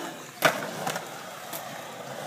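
Skateboard on concrete: wheels rolling, with one sharp clack of the board about half a second in and a few lighter clicks later.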